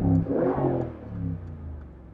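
Mercedes-AMG G63's twin-turbo V8 revved hard and heard from inside the cabin, the revs dying away over about a second and a half.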